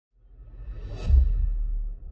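Logo-intro whoosh sound effect: a swell that rises to a deep boom about a second in, followed by a low rumble that starts to fade near the end.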